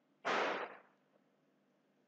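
A short, sharp exhale into the microphone, about half a second long, starting about a quarter second in and fading quickly.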